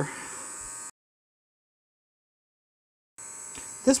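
Dremel rotary tool with a fine sanding disc running with a steady buzz; the sound cuts off abruptly to dead silence for about two seconds, then the buzz comes back just before the end.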